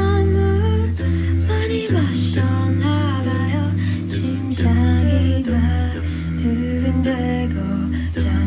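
A cappella group singing wordless backing harmonies over a held low bass line, with a few sharp percussive hits between phrases.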